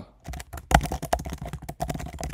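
Rapid typing on a computer keyboard: a quick, uneven run of key clicks, with one louder stroke a little under a second in.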